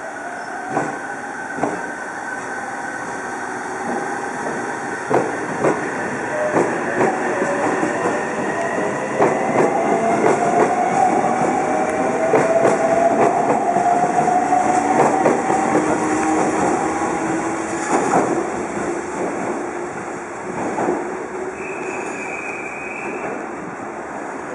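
JR Central 313 series electric multiple unit pulling away from a station platform. The traction motor whine rises steadily in pitch as it accelerates, over repeated clicks of wheels on rail joints and points, and it is loudest about halfway through as the cars pass close by.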